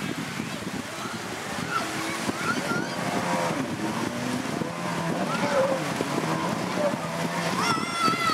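Jet ski engine running as the craft pulls away through shallow sea water, with the wash and splashing of the hull. A steady low engine drone holds through the second half.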